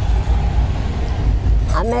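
Street background noise: a steady low rumble with a hiss over it, like passing road traffic. A voice starts near the end.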